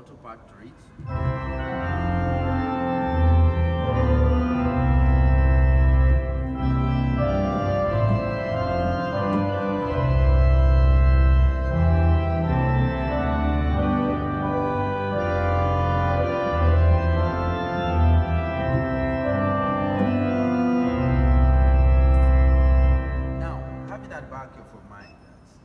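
Church organ played on manuals and pedals: a slow melody over deep pedal bass notes, each held for a second or two. It starts about a second in and dies away in the room just before the end.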